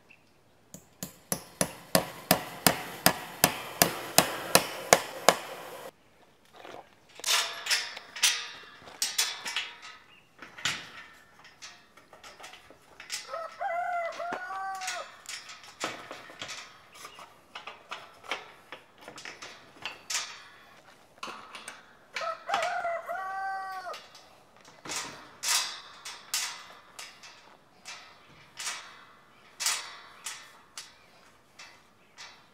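A rooster crows twice, once about halfway through and again some eight seconds later. Around the crows come metal clinks and taps of a wrench on steel gate hinge hardware, opening with a quick run of sharp taps, about three a second, that stops suddenly.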